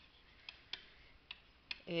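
A few faint, separate clicks from a pen tapping on a writing surface as handwriting is put down, over faint hiss.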